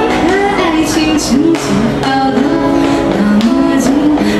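A woman singing a Mandarin pop song into a microphone, with steady acoustic guitar accompaniment.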